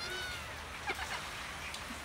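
Kitten mewing: one short, high mew at the start, then a couple of brief, fainter chirps about a second in.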